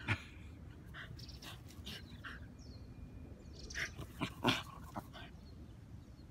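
Shiba Inu dog making short, scattered sounds: one sharp sound right at the start, then a quick cluster of them about four seconds in.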